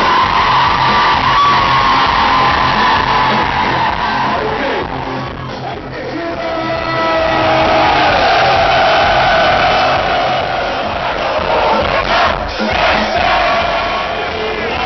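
Live party-band music played loud, with a crowd singing and shouting along in long held notes; the sound dips briefly about halfway through and then swells again.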